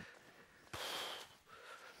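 A single short, breathy puff of air, about half a second long, just before the middle, otherwise quiet.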